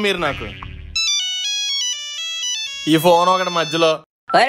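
A mobile phone ringtone plays a short electronic melody of stepping notes for about two seconds, with a man's voice before it and a voice again near the end.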